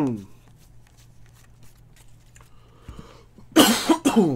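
A man coughs hard, clearing his throat, near the end, after a quiet stretch of faint handling of a stack of trading cards.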